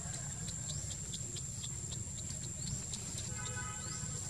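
Outdoor ambience: a steady high-pitched insect whine with short chirps repeating several times a second, over a low rumble. A brief pitched call sounds near the end.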